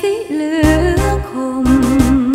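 Thai luk thung song: a held, wavering melody line, joined about half a second in by a pulsing bass and drum beat with cymbal hits.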